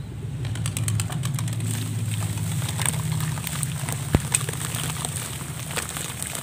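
Foamy water fizzing with fine crackles as the bubbles pop, over a low steady hum that weakens after a sharp click about four seconds in. Near the end, wet sand-and-cement mud crumbles from a hand into the water.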